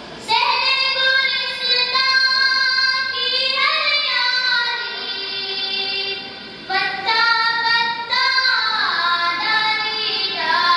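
A boy singing a hamd, an Urdu devotional poem in praise of God, solo and unaccompanied, holding long notes that slide between pitches. He sings two phrases with a short break for breath a little over halfway through.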